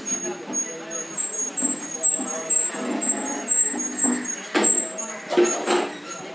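Indistinct voices in the background with short, repeated high-pitched squeaks, and two brief clattering bursts near the end.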